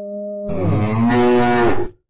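A cow mooing: one long low call that swells about half a second in, drops in pitch at its end and cuts off suddenly.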